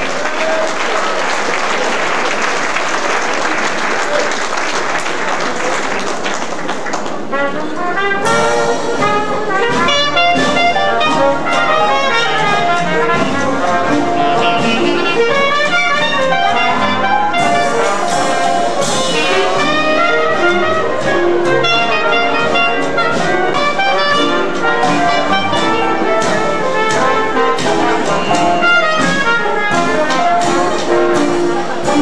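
Audience applause for the first seven seconds or so, then a traditional New Orleans jazz band strikes up: cornet, trombone and clarinet playing together over a rhythm section of banjo, double bass and drums.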